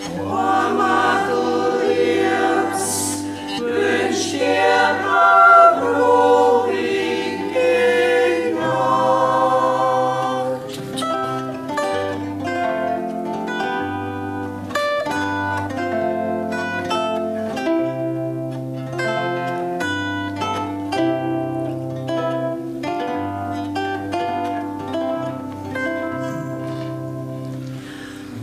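A mixed choir sings a folk song in several parts to concert zither accompaniment. About ten seconds in the voices stop and the zither plays on alone, a plucked interlude over steady bass notes.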